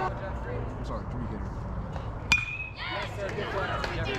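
A metal baseball bat striking the ball a little past two seconds in: one sharp ping that rings briefly. Voices from the stands pick up right after.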